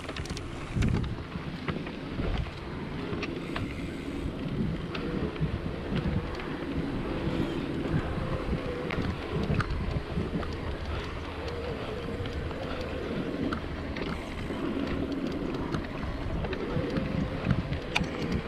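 Wind buffeting the microphone of an action camera on a mountain bike's handlebars while riding a dirt singletrack. Under it, the tyres roll over dirt and the bike gives off frequent small rattles and clicks.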